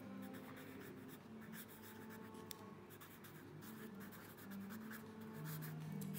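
Pen writing on paper: faint, irregular scratching of handwritten strokes.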